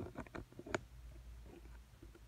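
A quick run of light clicks and taps from objects being handled on the table, the loudest a sharp click just under a second in, then only faint room noise.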